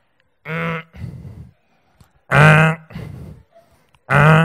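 A man's voice making two strained, held grunts, the second louder: a comic sound effect of the effort of pushing a bed along with the knees.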